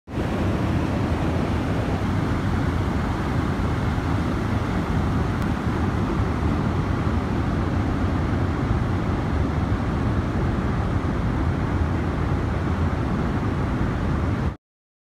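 Mountain stream rushing over rocks and small cascades: a steady, even noise of running water.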